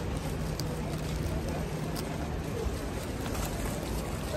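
Steady street traffic noise with a low hum that stops shortly before the end.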